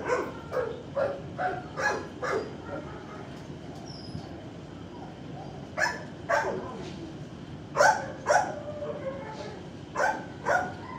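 Dogs barking in a shelter kennel block. A quick run of barks comes in the first couple of seconds, then a pair about six seconds in and another pair about eight seconds in.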